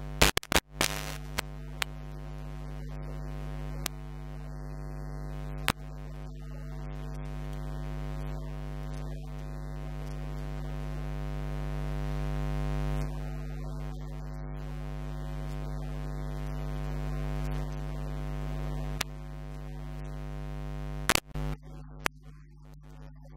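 Steady electrical mains hum with a stack of buzzing overtones, the sign of electrical interference in the audio chain. It is broken by sharp crackles: a cluster in the first second, a few single clicks after, and a double crackle near the end.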